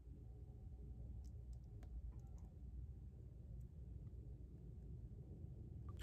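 Near silence over a low steady room hum, with a few faint small clicks between about one and two and a half seconds in and one more a little later.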